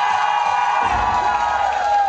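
Live concert music: one long high note held over the band, with a low drum hit about a second in, while the crowd cheers and whoops.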